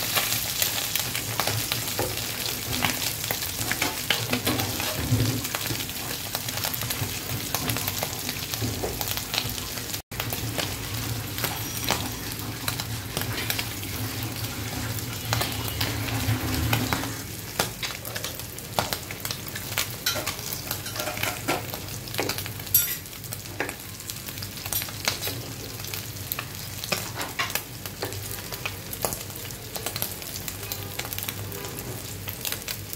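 Chapila fish frying in hot oil in a kadai: steady sizzling and crackling spatter, with a flat metal spatula scraping and turning the fish in the pan. The sizzle eases a little past the halfway point.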